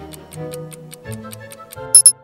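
Countdown-timer sound effect: a rapid clock ticking, about six ticks a second, over background music, ending near the end in a brief, loud high-pitched alarm tone as time runs out.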